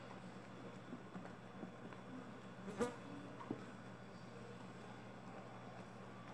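Faint stirring of a foaming baking-soda-and-vinegar cleaning mixture with a wooden spoon in a plastic tub, the foam rising as the vinegar reacts, with scattered soft ticks and one sharp tap a little before the halfway point, over a steady low hum.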